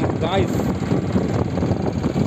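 Steady road and wind noise of a moving vehicle travelling along a highway, with a man saying a single word at the start.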